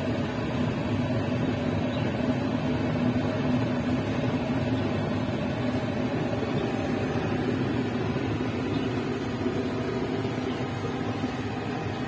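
A steady mechanical hum with a low rushing noise underneath, like a running fan or motor, holding an even level throughout.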